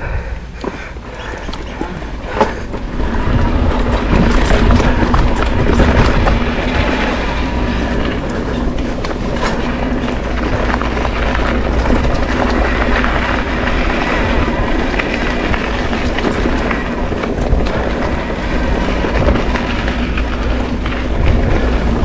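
Mountain bike riding over a rough dirt trail: continuous rattling and clattering of the bike with tyre noise, and wind rumbling on the action camera's microphone.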